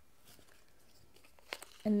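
Quiet room with faint handling of paper and card on a tabletop, and one light click about one and a half seconds in. A woman's voice starts just before the end.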